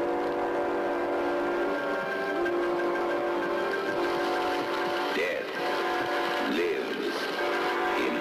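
Horror-film trailer score: sustained, eerie chords held for a second or more each, shifting pitch a few times, joined by wavering, gliding notes that swoop down about five and six and a half seconds in.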